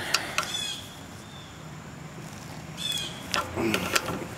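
Faint handling sounds with a few small sharp clicks from narrow pliers working the wire connector off the fuel-shutoff solenoid on the bottom of a Walbro carburetor.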